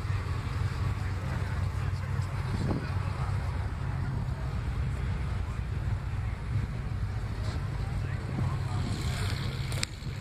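Wind buffeting the microphone as a steady low rumble, under the faint chatter of a crowd milling about. A short click just before the end.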